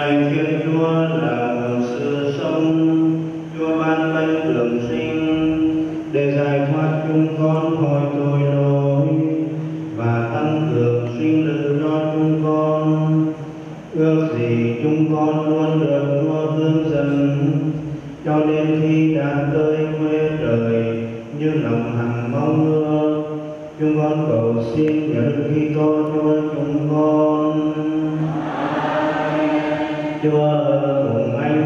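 A man's voice chanting a liturgical prayer of the Catholic Mass in Vietnamese, on long held notes, in phrases broken by short pauses every few seconds.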